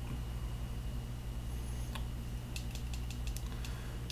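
A quick run of small plastic clicks about two and a half to three and a half seconds in, typical of the buttons on a vape box mod being pressed, over a steady low background hum.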